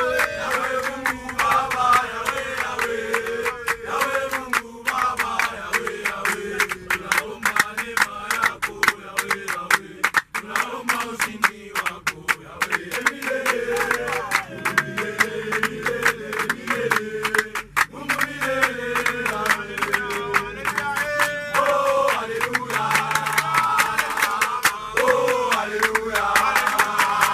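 A group of young men singing a team chant together, with rapid rhythmic hand clapping, inside a minibus.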